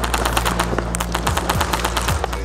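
Airsoft guns firing a fast, continuous stream of sharp shots, over background music.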